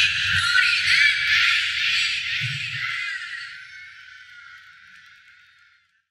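Concert crowd cheering and screaming, with shrill wavering voices in a dense wash of noise, fading out steadily to silence.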